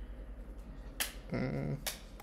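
Two sharp computer keyboard key clicks, about a second in and near the end. Between them a man makes a brief wordless voiced sound.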